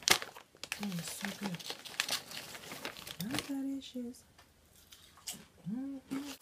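Packaging crinkling as it is handled, in irregular crackly bouts that pause for about a second a little after the middle.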